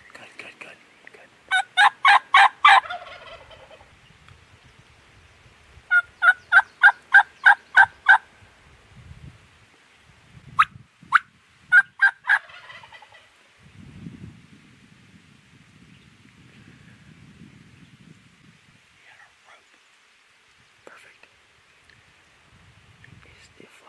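Wild turkey calling in three bursts: a quick run of about five loud notes about two seconds in, a longer even series of about nine notes from six to eight seconds, and a few sharp single notes near eleven to twelve seconds. Faint rustling follows.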